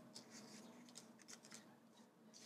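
Very faint rustling and a few light taps of die-cut paper ephemera pieces being pulled apart and laid down on a table.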